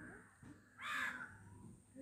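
A single faint bird call about a second in, over low room noise.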